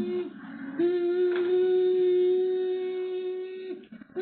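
A steady hummed note, held for about three seconds, with a short break near the start and another just before the end.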